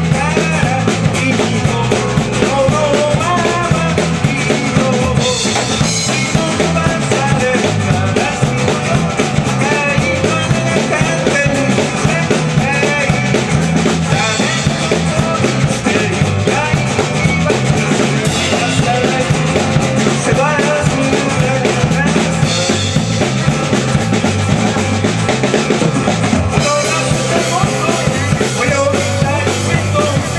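A small rock band playing live: drum kit, electric bass and acoustic guitar over a steady beat, with a wavering melody line on top.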